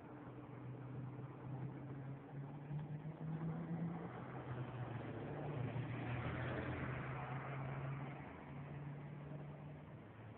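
A low engine hum whose pitch shifts up and down in steps, with a wash of noise that swells around six to seven seconds in.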